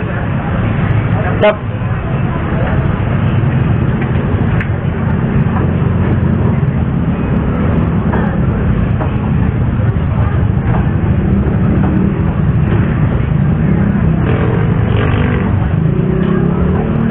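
Steady street traffic rumble with indistinct voices, and a single sharp knock about one and a half seconds in.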